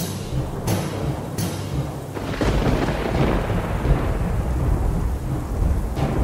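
A thunderstorm sound effect: steady rain with thunder. There are two sharp cracks in the first second and a half, then a low rolling rumble builds from about two seconds in.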